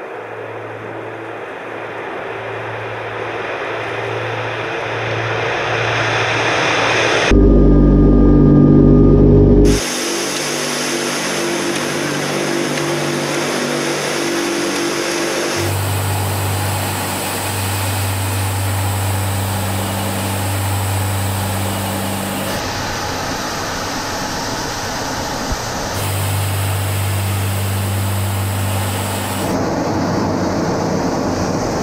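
Tupolev Tu-95's four turboprop engines and contra-rotating propellers running with a steady drone, its pitch and loudness shifting abruptly several times. The louder, lower stretch of about two seconds a few seconds in is heard from a camera mounted on the aircraft's nose on the runway.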